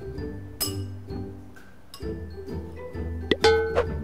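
Background music with a steady beat, over metal cutlery clinking against a ceramic bowl. The loudest is a single sharp, ringing clink a little after three seconds in.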